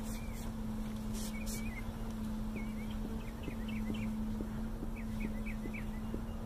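A package of honey bees humming steadily, with two short hissing squirts of a trigger spray bottle about a second in as sugar water is misted onto them. A bird chirps in quick series in the background.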